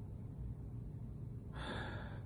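A man's short sharp gasp, an intake of breath about one and a half seconds in, as he braces against the pain of a wax strip on his nose, over a faint low hum.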